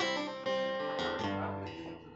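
Acoustic guitar strumming a few chords that ring out and die away near the end, closing the song.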